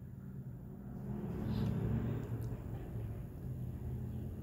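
Distant road traffic: a low car engine rumble that swells about halfway through as a car passes, then carries on as a steady hum of traffic.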